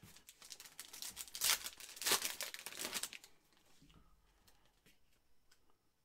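Foil wrapper of a Panini Chronicles football card pack being torn open and crinkled, a dense crackle for about three seconds, loudest around the middle, then fading to faint rustling.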